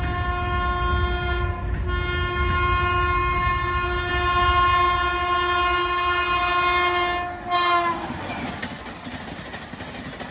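WAP7 electric locomotive's horn sounding one long blast, broken briefly about two seconds in, with a short last blast just before it stops near eight seconds. Then comes the rushing noise and wheel clatter of the Rajdhani Express coaches passing close by at about 130 km/h.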